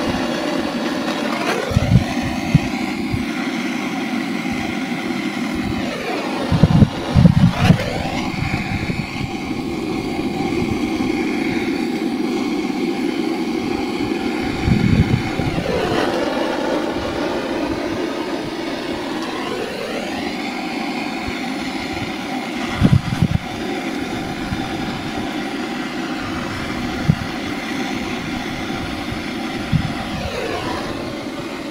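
Gas blowtorch flame running with a steady roar, its tone sweeping down and back up several times as the torch moves. A few short low thumps of wind on the microphone.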